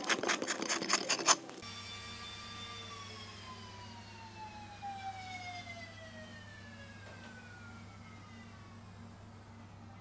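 Ice being scraped by hand with a carving tool: rapid, even strokes, about five a second, that stop abruptly after about a second and a half. Then a steady low hum with faint, slowly falling tones.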